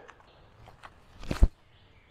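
A few light steps on a concrete tee pad, then a short whoosh ending in a sharp thump about one and a half seconds in, as a disc golf forehand throw is planted and released.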